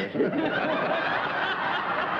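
A studio audience laughing, a mass of many voices laughing together that holds steady through the moment.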